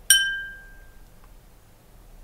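A small bell struck once: a bright ding whose ringing fades away over about a second. It is the cue for the learner to pause and give an answer.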